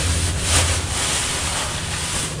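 A plastic bag rustling as whole black peppercorns are shaken out of it into a pot, over a steady background hiss.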